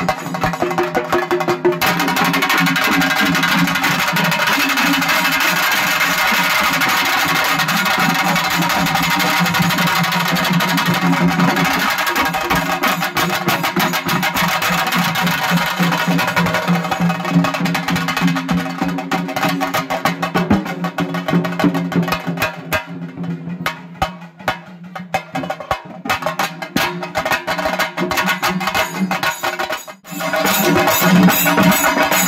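Several chenda drums beaten fast with sticks in a chenda melam, a loud dense roll of strokes. It thins to sparser, separate beats for a few seconds about three-quarters of the way through, then picks up again.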